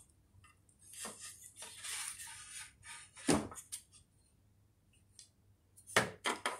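Soft rustling and light knocks of hands working wool yarn on a wooden Mapuche loom, with one short sharper knock about three seconds in and a few faint clicks.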